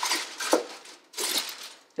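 Aluminium foil crinkling as a sheet is pressed and folded into a slow cooker, in two spells with a short pause between.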